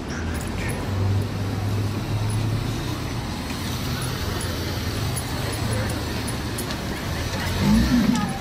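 Street traffic noise: a vehicle engine hums steadily nearby over the general noise of a busy street, swelling louder just before the end.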